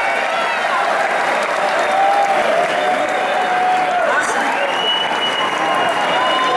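Concert audience applauding and cheering: a steady wash of clapping with shouting voices over it.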